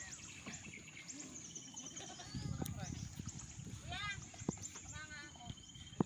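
Indistinct voices of people talking on the water, short calls about 4 and 5 seconds in, over steady high-pitched chirping in the background.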